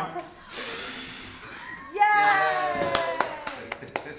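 People blowing out small birthday-style candles: a breathy rush of air lasting just over a second, then a drawn-out voiced cheer whose pitch slides down, with a few claps near the end.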